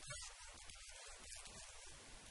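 Near silence: faint, patchy background hiss.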